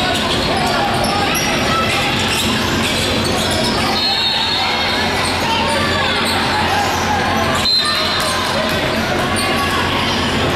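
Basketball game in a large gym: a ball bouncing on the hardwood court under a steady wash of crowd and player voices echoing in the hall, with a couple of short high squeaks from sneakers on the floor, one about four seconds in and one near eight.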